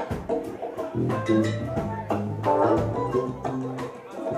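Live salsa band playing: a steady groove of percussion strokes over a bass line and sustained instrument tones.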